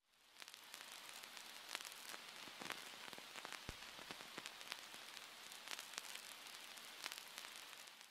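Faint crackling hiss with scattered sharp clicks and pops: old-film surface noise, fading in at the start.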